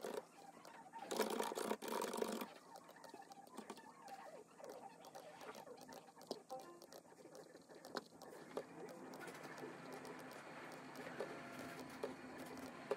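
Faint, irregular clicks of a computer mouse and small desk-handling sounds, with a short rustle about a second in and a faint steady hum near the end.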